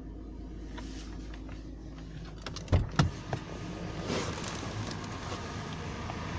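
Steady low hum inside the cabin of a 2015 Toyota 4Runner SR5. Three sharp knocks come about halfway through, followed by a rustling rise.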